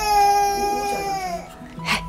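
A toddler crying: one long wail that lasts about a second and a half and trails off lower at the end.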